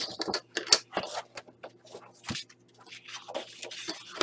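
Sheets of card and paper being handled and shifted about on a craft mat: a run of short scrapes, rustles and light taps.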